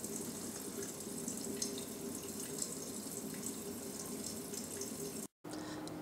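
Kitchen tap running steadily, the stream splashing over hands and a small fish into a stainless steel sink. The sound drops out for a moment near the end.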